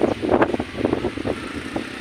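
Wind blowing across the microphone outdoors: a rough rushing noise with a steady low rumble and irregular gusts.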